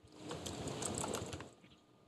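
Cloth rustling and crackling against a clip-on lapel microphone as its wearer turns in his seat, lasting about a second and a half and then fading.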